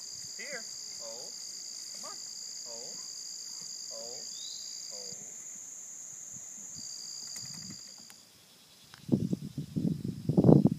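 Insects shrilling in two steady high tones, with short animal calls rising and falling in pitch about once a second. The shrilling stops at about eight seconds, and from about nine seconds loud rough rumbling noise is on the microphone.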